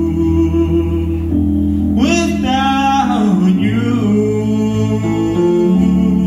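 A man singing a slow song live, accompanying himself on an electric keyboard with held chords that change every second or two. A sung phrase rises and falls about two seconds in.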